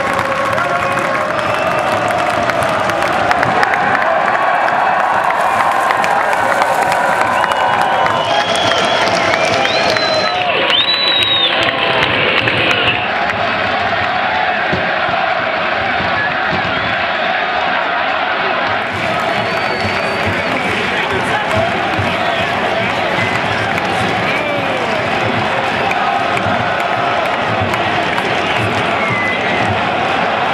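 Large stadium crowd of soccer supporters cheering and singing together, a steady loud wall of many voices, with a few short high shouts about ten seconds in.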